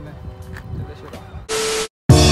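Faint outdoor background for about a second and a half, then a short loud burst of hiss-like noise with one steady hum tone under it, lasting under half a second and cutting off abruptly into silence.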